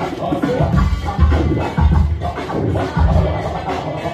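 Electronic dance music mixed live on a DJ controller and played loud through the venue's speakers, with a steady heavy bass beat.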